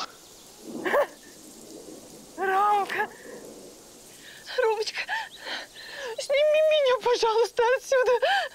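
A woman's voice laughing and crying out in high-pitched bursts without clear words, one cry held for most of a second near the end, with short pauses between the bursts.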